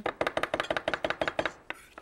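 Knife rapidly chopping crushed garlic very fine on a wooden butcher-block board: quick, even taps of the blade against the wood that stop about one and a half seconds in.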